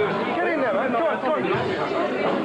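Several people talking at once: overlapping, unintelligible conversation of a small crowd.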